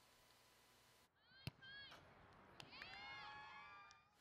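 Near silence with faint shouting voices: a brief call about a second in and a cluster of overlapping calls near the end, plus one sharp click about a second and a half in.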